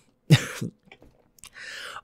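A woman's single short, breathy laugh, then a pause with a faint click and a breath in near the end.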